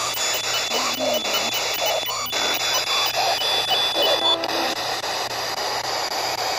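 P-SB11 dual-sweep ghost box scanning the radio bands: steady static chopped into rapid, even steps, with brief scraps of broadcast sound flicking past.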